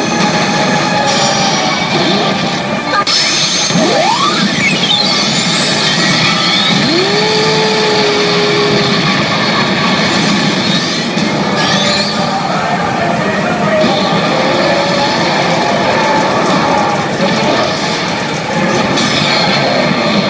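A CR Evangelion 8Y pachinko machine's speakers playing loud soundtrack music and effects during a reach with two 3s lined up. A sweep rises steeply in pitch about four seconds in, followed by a tone that glides up and then holds level.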